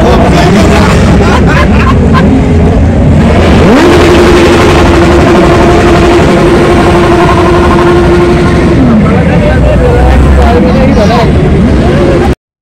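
Vehicle traffic and people's voices. About four seconds in, an engine rises in pitch, holds a steady high note for about five seconds, then drops away.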